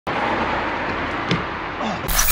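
Steady outdoor street noise of road traffic, with a short knock about a second in.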